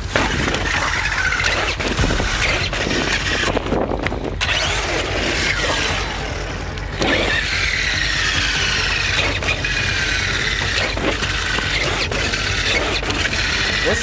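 Traxxas X-Maxx RC monster truck's electric motor and geared drivetrain whining, the pitch rising and falling as it speeds up and slows down, with a brief drop about six seconds in.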